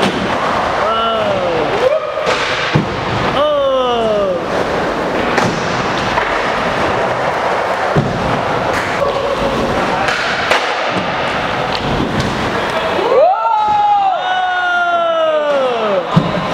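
Inline skates rolling and knocking on the wooden skatepark ramps, with men letting out drawn-out wordless yells. The longest yell comes near the end.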